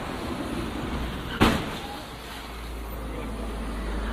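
A dramatic sound effect: a vehicle's noisy rumble with one sudden hard impact about a second and a half in, then a steady low rumble.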